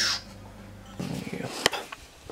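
Camera handling noise: a brief rush as a hand passes over the camera, then rustling knocks and one sharp click as the camera is moved.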